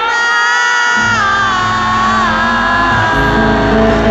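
Live band music with a long held high sung note that slides down in steps; the bass comes in about a second in.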